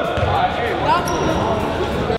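Basketballs bouncing on a hardwood gym floor, with players' voices chattering around them.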